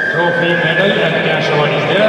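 Speech in a large hall, with a long, steady high whistle that sounds through the first second and a half and then fades.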